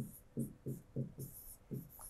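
A pen writing on an interactive whiteboard screen: about six short, quick strokes, each a soft tap with a faint scratch, as a word is written out in joined letters.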